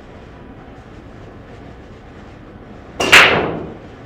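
A single hard, loud knock about three seconds in that rings off over most of a second, over low room noise.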